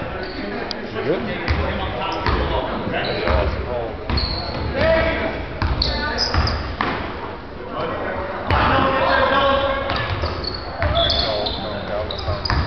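Basketball bouncing on a hardwood gym floor in repeated thumps during game play, with voices of players and spectators in the gym.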